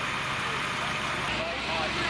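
Fire engine's diesel engine running amid steady street noise; about a second in, the sound changes abruptly to a deeper, steady engine rumble as a pumper drives up.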